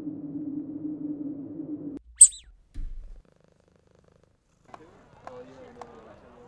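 A low, steady growl that cuts off suddenly about two seconds in, followed by one loud, sharp high-pitched squeak and a brief low thump.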